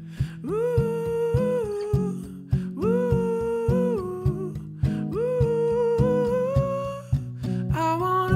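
A man singing three long wordless phrases, each settling on a held note, over a strummed acoustic guitar.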